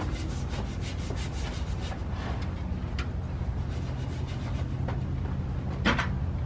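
A brush scrubbing a board in quick back-and-forth strokes, fast at first and thinning out after about two seconds, over a steady low hum. A sharp click comes just before the end.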